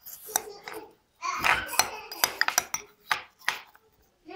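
A metal spoon clinking repeatedly against a small glass jar while it scrapes and scoops through a 25% ethylene glycol antifreeze mix that has frozen to slush rather than hard ice.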